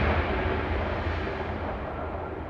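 The fading tail of a deep soundtrack boom: a low, rumbling drum hit dying away steadily.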